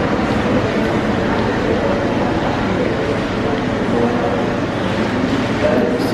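Steady background din of a busy restaurant dining room, with indistinct voices in the mix.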